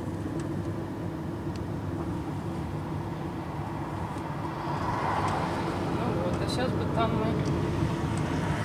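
Steady engine and tyre noise of a moving car heard from inside the cabin, getting a little louder about five seconds in. A voice starts near the end.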